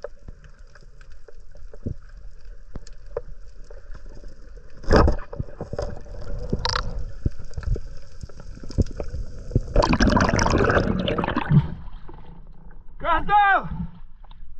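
Muffled underwater audio on a free dive: scattered clicks over a faint steady hum, with a sharp knock about five seconds in. A loud rush of water and bubbles follows around ten seconds in. Near the end, at the surface, there are two short vocal sounds.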